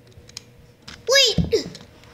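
Light clicks of a plastic toy car being handled, then about a second in a short, high, swooping sound that rises and falls in pitch, followed by a low thump.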